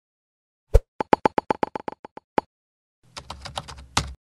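Logo-animation sound effects: a thump, then a quick run of about ten short clicks at roughly eight a second, growing quieter. After a gap comes a second of noisy rustle over a low hum, ending in a sharp hit.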